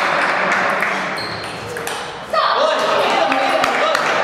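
Table tennis balls clicking off bats and tables in a busy hall, in short irregular ticks over a steady hubbub of voices. A single voice rises clearly about two and a half seconds in.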